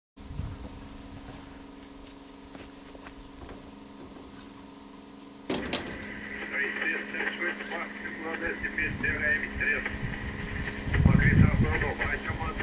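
Diesel-electric freight locomotive idling with a steady hum. About five and a half seconds in, indistinct voices start up over it, and louder low rumbles come near the end.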